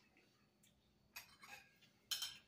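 Near silence: room tone with a few faint clicks in the second half.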